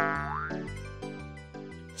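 Cartoon sound effect at the very start, a quick downward pitch slide lasting about half a second, over light, steady background music that slowly fades.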